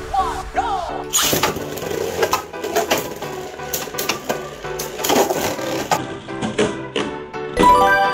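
Beyblade Burst spinning tops clashing in a plastic stadium: repeated sharp clacks as the tops strike each other and the clear wall, starting about a second in, over background music.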